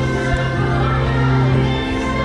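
Christmas parade soundtrack from the parade's loudspeakers: a choir singing long held notes over steady music.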